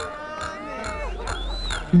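Electronic dance music from a live DJ set during a breakdown: slowly gliding synth tones, one rising then falling near the end, over a steady ticking hi-hat, with the heavy bass dropped back.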